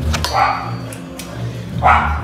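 A dog barking twice, once about half a second in and again near the end.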